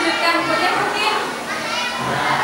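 Several children's voices talking and calling out together, speech overlapping in a lively classroom hubbub.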